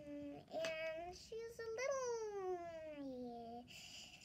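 A young girl's voice singing wordlessly: a few short notes, then one long note sliding steadily down in pitch for nearly two seconds.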